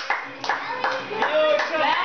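Scattered hand clapping with children's high voices talking and calling out over it.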